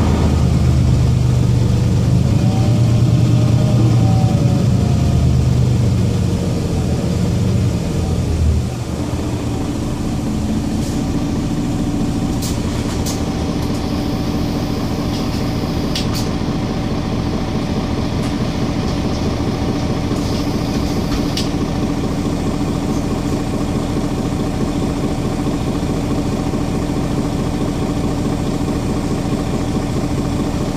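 Mercedes-Benz Citaro Facelift G articulated bus's diesel engine heard from inside the passenger cabin: it runs louder for the first eight seconds or so, then drops abruptly and settles to a steady idle while the bus stands. A few short, sharp sounds come in the middle of the idle.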